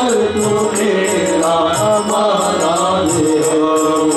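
Live Hindi devotional bhajan: a male lead voice sings with harmonium accompaniment over a steady beat of light percussion.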